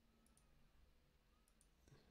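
Near silence: room tone with a few faint, short computer mouse clicks.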